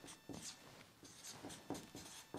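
Marker writing on a paper chart: a series of short, faint strokes.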